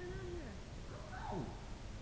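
A person's voice: the tail of a spoken phrase, then a drawn-out "oh" about a second in that falls steeply in pitch, over a steady low rumble.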